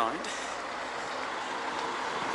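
Steady noise of passing street traffic, an even wash of vehicle sound with no distinct events.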